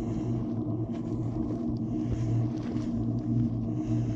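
Footsteps of a hiker walking on a dirt trail, a step about every half second or so, over a steady low rumble.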